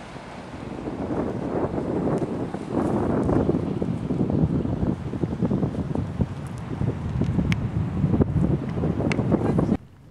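Wind buffeting the microphone over the crunch of footsteps on beach pebbles, with a few sharp clicks of stone. It cuts off suddenly near the end.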